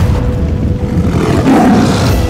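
Low, heavy rumble of a stampeding buffalo herd in a film sound mix over music, with a rising whoosh near the end.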